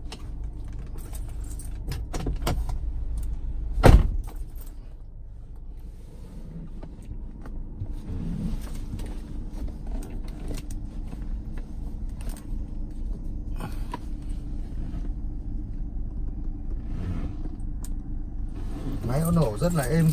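2011 Kia Sorento's engine idling steadily, heard from inside the cabin and running very smoothly. A few light clicks and one sharp knock about four seconds in come from handling the controls.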